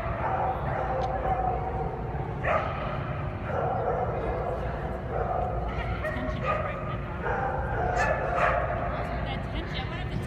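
Dogs yipping and whining in a large echoing hall: high pitched cries, each held for a second or so, that come and go every second or two over a hum of voices.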